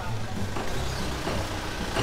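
A light truck's engine running, with background music underneath.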